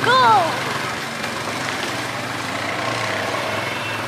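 Motorcycle engine running steadily as the bike rides along, with a steady rush of wind and road noise over it.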